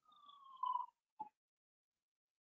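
Faint whistle-like tone gliding slowly down in pitch for about a second, then a short blip, as stray extra noise on a video-call audio line.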